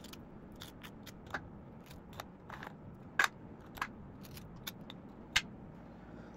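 Butter knife scraping cream filling out of Oreo biscuit halves, with irregular short clicks and scrapes of knife and biscuits against the plate. The sharpest clicks come about three seconds in and again near the end.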